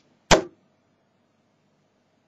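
A 24-gram, 90% tungsten dart striking a dartboard: a single sharp hit about a third of a second in.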